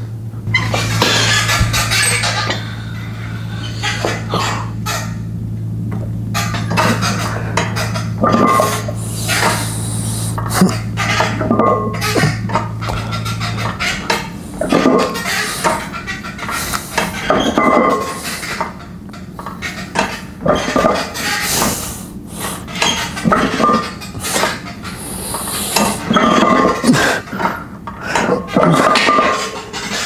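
Metal gym weights clanking and clinking during a set, over background music. A steady low hum stops about halfway through.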